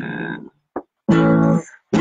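A short strummed guitar chord about a second in, just before the song starts.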